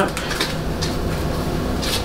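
Quiet handling of a small quilted leather handbag as its front flap is opened: a few faint clicks in the first half-second and a brief rustle near the end, over a steady low hum.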